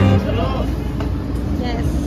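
Indistinct voices over a steady low hum, no words clear.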